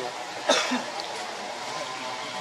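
A single short cough about half a second in, over a steady faint background drone.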